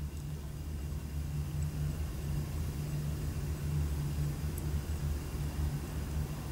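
Room tone: a steady low hum with nothing else distinct.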